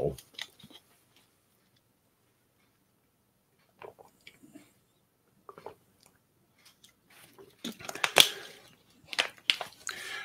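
A man drinking and handling a plastic water bottle. A few faint sips and small clicks come first. About seven and a half seconds in there is a louder cluster of crinkles and sharp clicks, loudest a little after eight seconds.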